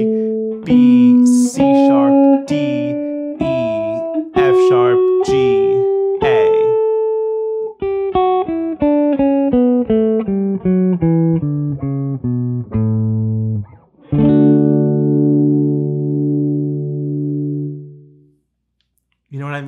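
Gibson Les Paul electric guitar playing the D major scale from its fifth degree, A, one note at a time. The notes climb step by step for the first several seconds, then a quicker run falls back down, and a low note is held and left ringing until it fades near the end.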